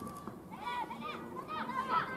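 Several high women's voices shouting short calls during a football match, one after another and sometimes overlapping.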